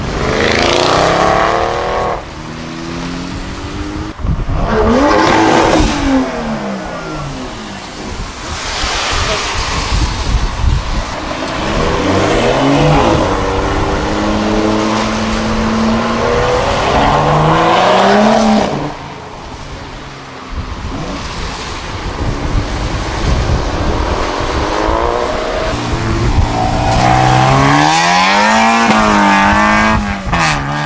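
Several modified cars accelerate hard away one after another on a wet road, a Nissan Skyline R34 among them. Each engine's pitch rises through the revs and drops at the gear changes. Tyres hiss on the wet tarmac underneath.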